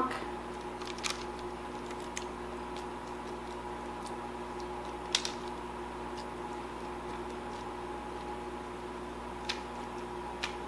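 Steady hum of a kitchen appliance, with a few light clicks and taps as a silicone pastry brush is dipped into a glass measuring cup and dabbed onto biscuit dough. The clearest tap comes about five seconds in.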